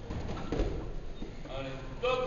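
Young children's voices, with one high-pitched call about a second and a half in.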